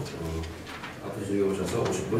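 A man speaking into a podium microphone, with low hummed syllables between words.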